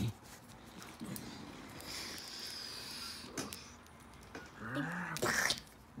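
A person's breathy vocal sound effects for a toy fight: a soft drawn-out hiss, then near the end a short voiced rise-and-fall and a sharp breathy burst.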